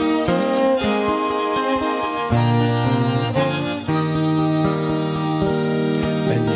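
Instrumental break of an Irish folk song: a harmonica plays the tune over a strummed acoustic guitar and a bowed fiddle.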